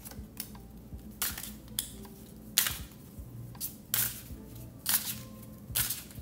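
A deck of tarot cards being shuffled by hand, in short sharp swishes and snaps at an irregular pace of about one every half second to second.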